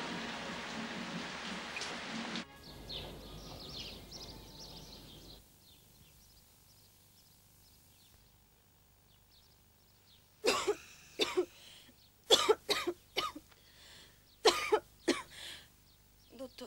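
A sick girl coughing in short fits of two to four coughs, beginning about ten seconds in after near silence.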